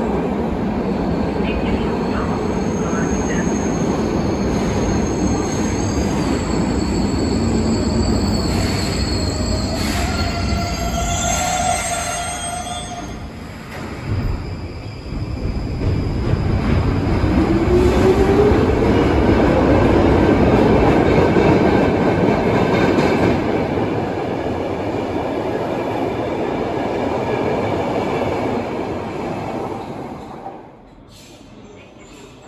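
Stockholm metro train pulling in with a rumble and high wheel and brake squeal, coming to a stop about halfway with a thump. It then pulls out with a rising motor whine, growing louder and fading away near the end.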